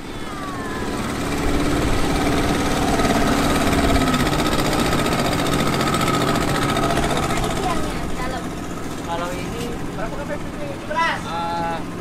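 Small Yamaha outboard motor running at low speed on a fiberglass skiff passing close by, a steady drone that drops away about two-thirds of the way through. Voices come in near the end.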